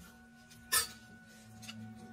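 A single sharp clink of a metal spoon against a ceramic bowl, about three-quarters of a second in, ringing briefly.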